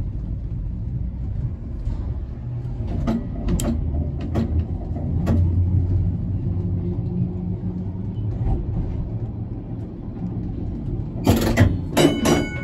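W class tram running along the track, heard from aboard: a steady low rumble of motors and wheels on rail, with scattered sharp clicks and clunks, and a louder burst of clatter near the end.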